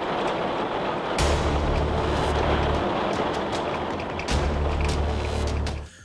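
Electronic background music: a steady dense wash of sound with two long, deep bass notes, the first starting about a second in and the second about four seconds in.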